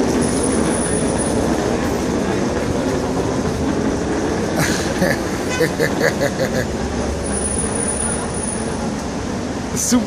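City street traffic: cars and vans driving past with a steady road rumble. A short run of quick high chirps comes about five to six and a half seconds in.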